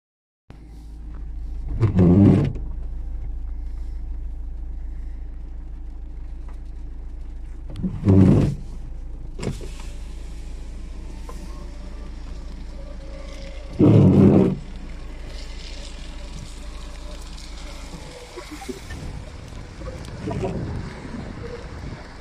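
Steady low rumble heard from inside a parked car's cabin in gusty storm wind, broken by three loud half-second bursts about six seconds apart. The rumble drops away a few seconds before the end, leaving uneven gusty noise.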